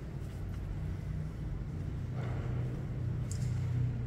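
A low steady rumbling hum that slowly grows louder, with no speech.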